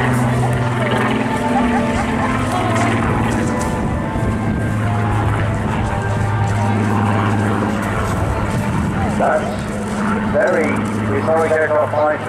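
Rolls-Royce Griffon V12 engine of a Spitfire Mk XIX in a display pass: a steady drone whose pitch shifts as the aircraft manoeuvres. Loudspeaker commentary comes in over it about nine seconds in and again near the end.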